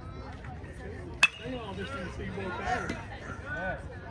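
A metal baseball bat hitting a pitched ball about a second in: one sharp ping with a short ring, the loudest sound here, over spectators' voices and chatter.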